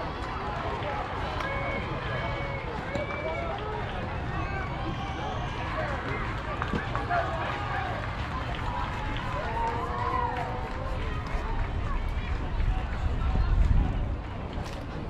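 Overlapping distant voices of softball players and spectators calling out, with no clear words. A low rumble, like wind on the microphone, builds near the end.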